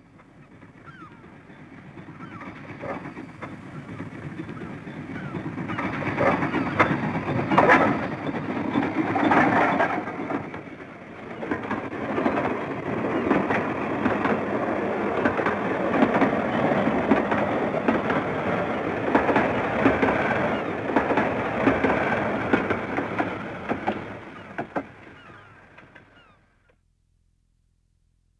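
Steam tram locomotive running with its train, the working steam engine and running gear growing louder over the first several seconds, holding, then fading away and stopping shortly before the end.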